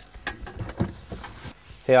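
Gardening tools being shifted around in a car's trunk: a strimmer knocking and rattling against a folding aluminium ladder, with irregular clattering that stops after about a second and a half.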